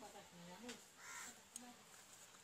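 Faint, distant voices talking in the background, heard as short scattered syllables at very low level.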